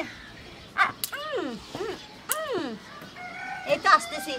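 A rooster crowing: a run of short arched notes about a second in, ending in one long falling note.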